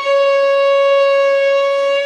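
Violin playing one long, steady bowed note, the string stopped with a very light left-hand fingertip: only the minimum of weight, just past the point where it would whistle.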